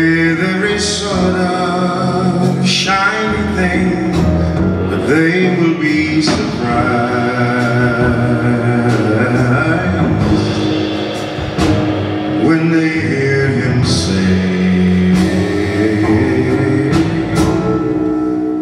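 A male baritone jazz voice singing live, with long held and sliding notes, over a band with upright bass.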